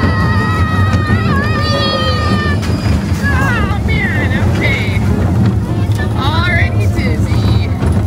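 Barnstormer kiddie roller coaster train running with a steady low rumble and wind on the microphone, with a high, steady squeal in the first two or three seconds. From about three seconds in, riders' voices call out over the rumble as the ride ends.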